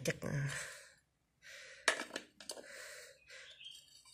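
A few sharp plastic clicks and knocks from hands working at the air-filter housing of a Dolmar 61 cc chainsaw, the loudest just before two seconds in, with soft breathing around them.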